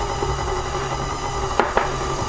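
Electric stand mixer running steadily, its beater churning thick mashed-potato dough in a metal bowl, with two sharp knocks close together about one and a half seconds in.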